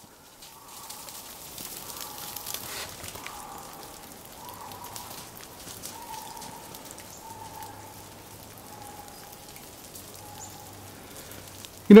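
Snowmelt dripping from the trees, with a faint, long-drawn, slightly wavering call repeated several times, which the walker wonders is a lynx hunting.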